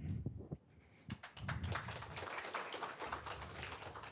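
Audience applauding: a scattered, moderately quiet clapping that starts about a second in.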